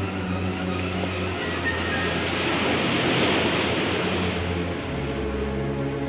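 Background drama score with sustained low notes, joined by a rushing noise that swells to a peak around the middle and then dies away.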